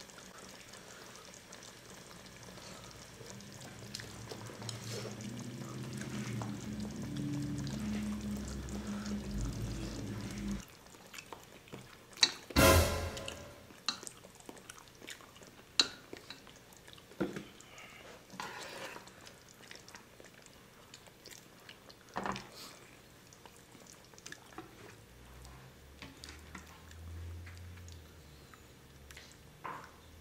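Tableware sounds at a hot pot meal: chopsticks clicking and clattering against bowls and a metal stockpot while the broth is stirred, with a louder clatter about halfway through. For the first ten seconds a low droning background sound swells underneath and then cuts off suddenly.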